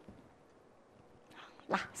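Near silence: a pause in a woman's speech, with faint room tone, until she starts speaking again near the end.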